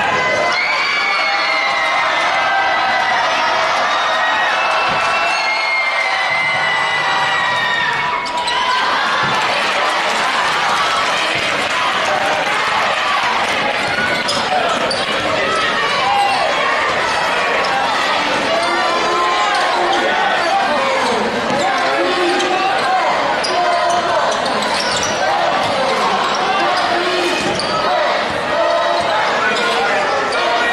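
Basketball game in a gym: a ball bouncing on the hardwood court over steady crowd voices, with many short squeaks and shouts during play.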